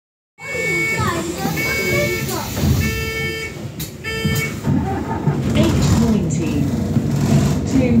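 Inside a moving bus: voices over the bus engine running, with several held pitched tones in the first half and the engine growing louder near the end.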